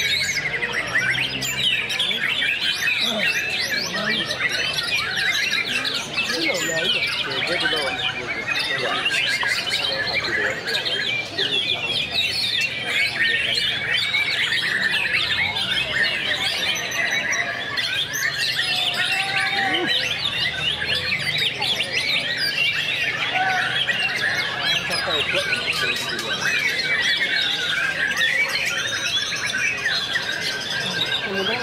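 Many caged white-rumped shamas (murai batu) singing at once, a dense, unbroken mass of overlapping whistles, chirps and rapid trills.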